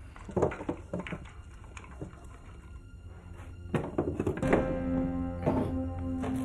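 Several thuds and knocks of a wooden cabinet being gripped and shifted while someone reaches behind it. Music with long held notes comes in about four and a half seconds in.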